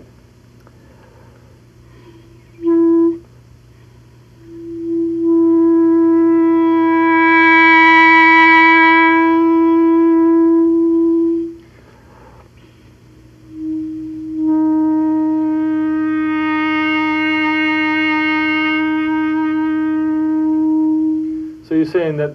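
Clarinet playing a brief note, then two long held notes at the same pitch, each swelling in loudness as it is sustained. It is a demonstration of controlling volume by moving the mouthpiece.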